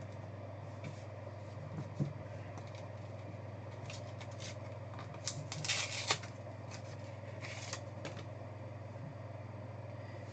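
Trading cards and plastic card holders being handled: a few soft clicks, then a crinkly rustle of plastic and foil wrapping a little past the middle and again briefly later, over a steady low electrical hum.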